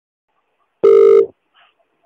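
A single short electronic telephone beep, one steady tone lasting about half a second, at the start of a recorded phone call.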